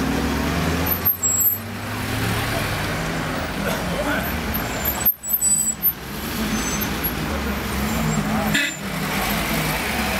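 A motor vehicle's engine running steadily as a low hum, with indistinct voices of people talking over it. The sound drops out briefly about a second in and again halfway through.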